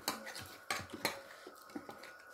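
Light clinks and clatter of dishes and cutlery being handled at a meal, with three sharper clicks in the first second or so.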